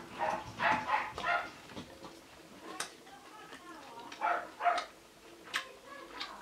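Chewing a crunchy caramel brownie protein bar, with a few sharp crunches. Louder short, high-pitched whimpering cries come twice: near the start and again after about four seconds.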